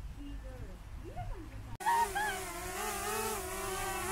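Small quadcopter drone's propellers buzzing. The steady, high whine wavers slightly in pitch and cuts in suddenly about two seconds in, after a quiet start.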